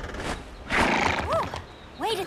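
A cartoon winged horse's whinny, one short call that rises and falls in pitch about a second in.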